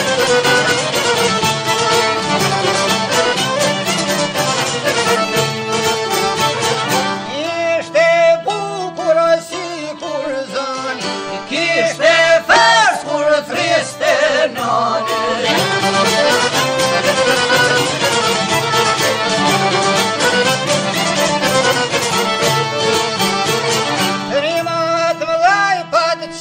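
Albanian folk song recording playing with a steady beat; a wavering, vibrato-laden melody line stands out in the middle.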